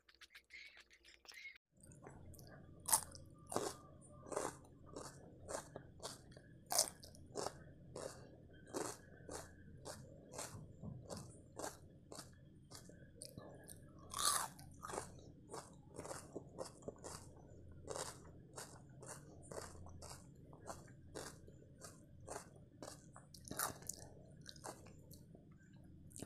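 A person chewing a mouthful of food close to a lapel microphone: steady wet mouth clicks, about two a second, starting about two seconds in.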